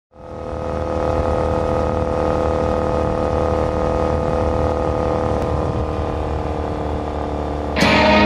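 2015 Triumph Bonneville's air-cooled 865 cc parallel-twin through an aftermarket Toga exhaust, cruising at a steady speed with an even, unchanging engine note. It fades in at the start, and guitar music comes in abruptly just before the end.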